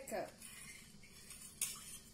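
A metal spoon scraping and clinking in a small stainless steel saucepan of syrup, with a sharp clink about one and a half seconds in.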